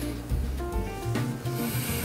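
Fragrance World Vanille en Tobacco eau de parfum bottle's atomizer spraying onto a paper test strip: a short hiss of about half a second near the end, over soft background music.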